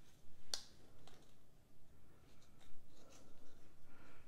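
Cardstock being folded and pressed together by hand: soft paper rustling and scraping, with one sharp crackle about half a second in and a few faint ticks.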